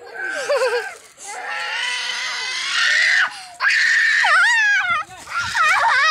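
A child screaming: long, high-pitched cries with a wavering pitch, one held for about two seconds from a second in and another ending in wobbling falls just before the five-second mark, with more cries near the end.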